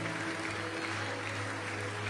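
Soft background music of sustained, held chords, over a faint even hiss of crowd noise.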